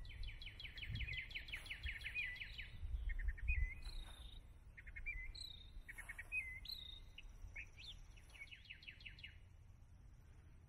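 Songbirds singing: a fast trill of rapidly repeated notes, then scattered chirps and short whistles, and another quick trill near the end, over a low rumble that is loudest a few seconds in.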